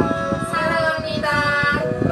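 A song: a high singing voice holds long notes over a backing track with a steady beat.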